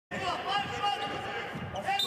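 A basketball bouncing on the court amid arena crowd noise and voices.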